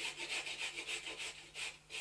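A quick run of rasping, scraping strokes, about five a second, fading away toward the end.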